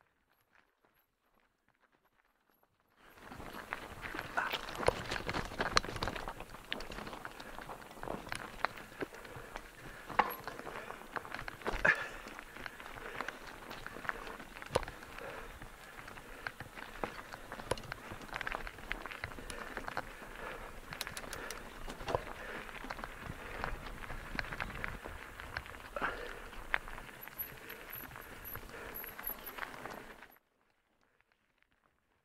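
Mountain bike rolling down a loose gravel and scree track: tyres crunching over stones, with frequent clicks and rattles from the bike. It starts abruptly about three seconds in and cuts off right at the end.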